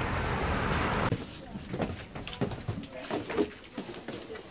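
Steady hiss of a rainy, wet street for about the first second, cutting off abruptly. After the cut it is much quieter, with scattered light knocks and clicks.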